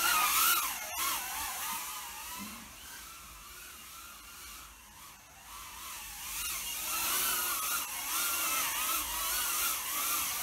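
Mobula 8 micro FPV drone flying, its motors and props giving a high whine that rises and falls in pitch with the throttle. Louder at the start and over the last few seconds, quieter in the middle.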